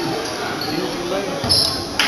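Basketball being dribbled on a gym's hardwood floor during play, over spectators' chatter in the echoing gymnasium, with a thump and a short high squeak about one and a half seconds in.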